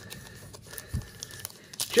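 Plastic wrapper of a 2021 Topps Gypsy Queen trading-card pack crinkling as it is handled, with a low bump about halfway and a short, sharp crackle near the end as the top of the pack is torn open.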